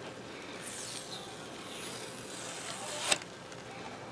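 A silkscreen being peeled up off a freshly printed glass plate: a soft rustling peel, with one sharp click about three seconds in.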